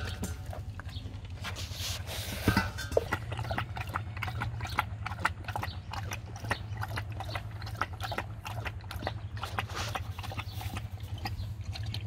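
A dog eating fast, chewing and gulping soft chunks of possum-meat dog roll from a stainless steel bowl and then drinking from a plastic bucket: a quick, irregular run of wet mouth clicks, several a second, over a steady low hum.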